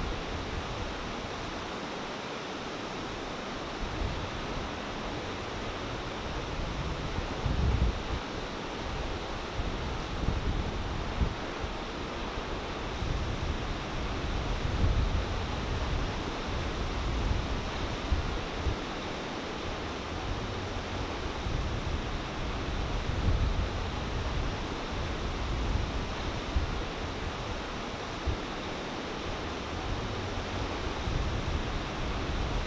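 Steady roar of breaking ocean surf, with wind buffeting the microphone in irregular low gusts.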